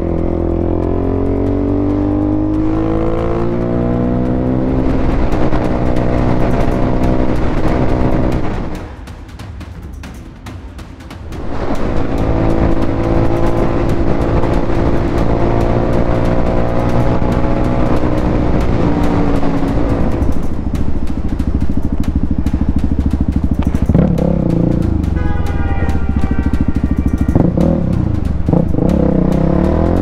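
Dirt bike engine accelerating through the gears, its pitch climbing and dropping back at each shift. About nine seconds in, the throttle closes and it goes quieter for a couple of seconds, then it pulls hard again.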